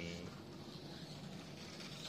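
Faint, steady whir of a mini electric RC car running on a carpet track.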